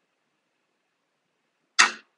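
A single sharp hand clap near the end, after near silence: the sync clap on the played-back clip, used to line up the separately recorded audio with the video.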